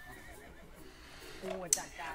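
Quiet stretch with faint voice sounds and a short, low hum of a voice near the end.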